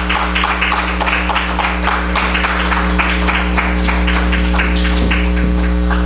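Audience applauding: many hands clapping in a dense, steady patter, over a steady mains hum.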